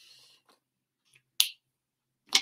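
A single sharp click about one and a half seconds in, after a brief hiss that fades out at the start.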